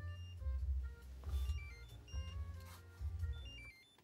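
Amazon Halo Rise sunrise alarm clock sounding its alarm beep: a faint run of short electronic tones that hop between pitches like a little chime, over a low rumble. It is the quiet opening beep of the light wake-up period, which grows louder as the alarm time nears.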